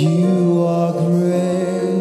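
Gospel worship singing: a male lead voice with backing singers holding one long note, with a brief break about halfway.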